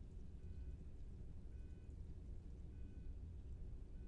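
Bedside heart monitor beeping in time with a slow pulse of about 50 beats a minute: four short two-tone beeps a little over a second apart, over a low steady hum.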